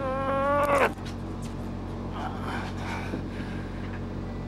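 A man's long, strained, high-pitched groan of effort lasting about a second, rising at the end as he heaves on a heavily loaded rod. A steady low hum runs underneath.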